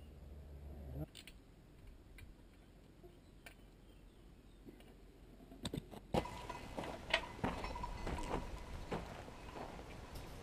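Scattered light clicks and knocks from tools and fence parts being handled, sparse at first and coming more often from about six seconds in.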